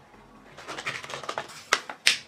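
Plastic packaging crinkling and crackling as it is pulled and twisted by hand, a run of small irregular clicks that starts about half a second in, with one sharper crackle near the end; the wrapper is not giving way.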